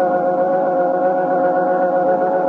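Closing theme music on organ: sustained, steady held chords.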